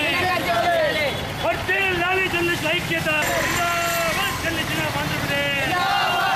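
A group of men shouting protest slogans together while marching, their repeated shouts rising and falling, with street traffic underneath.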